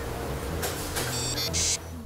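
Cartoon machine sound effects over background music: a short high electronic beeping a little past the middle, then a brief spray-like hiss near the end.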